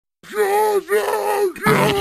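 A voice groaning like a zombie: two drawn-out moans of about half a second each, then a rougher, breathier one near the end.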